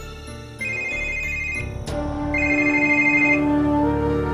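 Mobile phone ringing: two rings of a high two-tone ringtone, each about a second long, with a sharp click between them, over background music.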